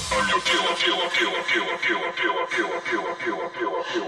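Electronic dance music track in a stripped-back passage: the heavy bass drops fall away and a short, falling, voice-like sample repeats about four times a second.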